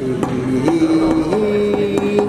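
Music: a slow melody of long held notes that step up and down a few times, over scattered percussion hits.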